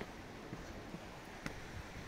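Quiet outdoor ambience: a faint steady wash with a few light clicks, one about half a second in and a sharper one about a second and a half in.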